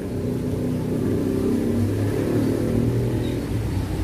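A motor vehicle engine running as a steady low drone, its pitch shifting slightly about halfway through.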